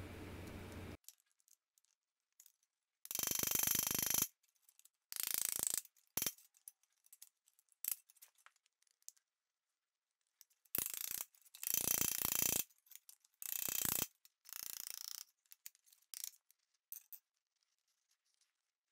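A small body chasing hammer tapping rapidly on a thin stainless steel cone over an anvil horn, a metallic clatter in about six runs of half a second to a second each, with silences between. It is shrinking the metal to close the cone's seam for a lap joint.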